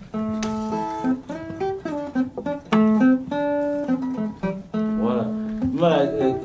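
Two acoustic guitars playing West African desert blues: plucked single notes in short, repeated pentatonic phrases, loosely jammed.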